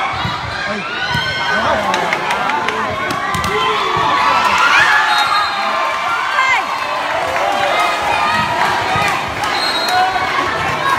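A crowd of young voices shouting and cheering throughout, with several sharp slaps of a volleyball being struck or hitting the court, a cluster of them a couple of seconds in and another near the end.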